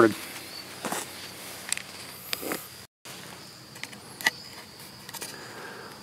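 A few faint, sharp clicks and light handling of a trail camera's plastic case over quiet outdoor background, with a faint steady high tone. The sound cuts out completely for a moment about three seconds in.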